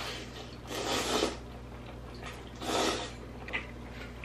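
A person slurping instant ramen noodles, two short airy slurps, over a low steady hum.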